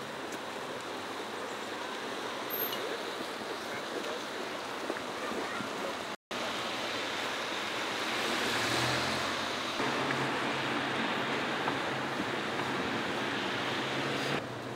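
Street traffic on a wet road: a steady hiss of car tyres on wet tarmac, swelling as a car passes close about eight seconds in, with a low engine hum after it.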